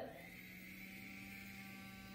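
Handheld battery-powered milk frother running dry with its whisk in the air, its small motor giving a faint, steady hum that holds one pitch. It is running on freshly fitted batteries.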